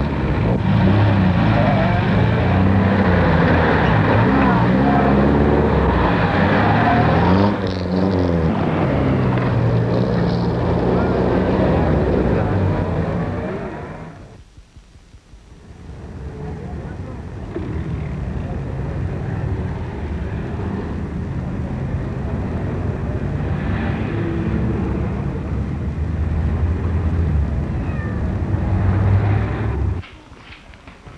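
Loud city traffic: car and truck engines running in a dense mix with voices. The sound drops away briefly about halfway through, then comes back as steadier street noise.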